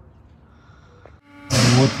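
A short, quiet pause with faint background noise, then a man's voice starts talking loudly about halfway through.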